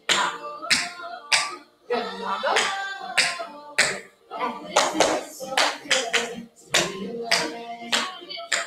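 Tap shoes striking a studio floor in quick, irregular steps, mixed with hand claps as part of a tap combination, over music with a singing voice.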